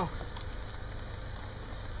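Steady low rumble and faint hiss of wind on the microphone, with a couple of faint clicks.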